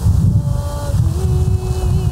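Wind buffeting the microphone, a heavy uneven low rumble, with a soft melody of long held notes faintly beneath it.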